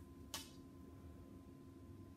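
Near silence: faint room tone with a thin steady hum, and one light tap on the whiteboard about a third of a second in as the ruler and marker are set against it.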